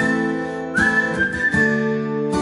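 Steel-string acoustic guitar strummed in a steady rhythm, with a whistled melody line held high above it that slides up into a new note about three quarters of a second in.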